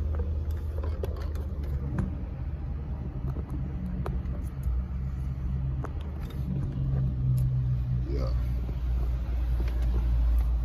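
Straight-piped Kia K900's 5.0-litre V8 heard from inside the cabin, running with a steady low exhaust drone while the car pulls away slowly. The drone swells a little about seven seconds in.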